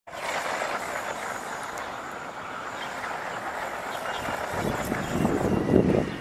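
Radio-controlled short-course truck driving fast over dry grass and dirt: a steady hiss of tyres and drivetrain, growing louder and fuller over the last couple of seconds.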